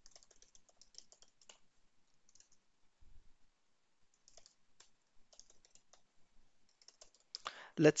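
Faint computer keyboard typing in short clusters of keystrokes, with pauses between them, as a line of code is typed.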